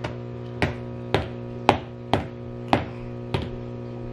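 A baby's plastic toy lightsaber whacking repeatedly, about seven sharp strikes roughly every half second, each with a short ring.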